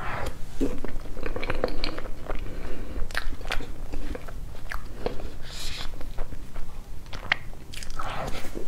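Close-miked eating of soft cream-filled sponge cake: wet chewing and lip-smacking with many small mouth clicks, and the metal spoon scooping into the cake.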